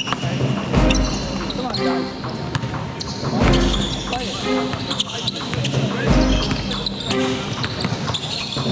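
Basketball game sounds in a gym: a ball bouncing on the hardwood floor, with players' voices and shoes on the court.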